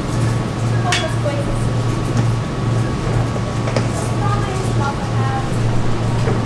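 A steady low hum of room noise, with faint, distant voices and a few light clicks over it.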